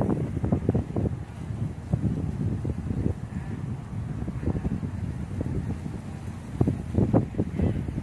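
Wind buffeting a phone's microphone: an uneven low rumble that rises and falls in gusts, with stronger gusts near the start and about seven seconds in.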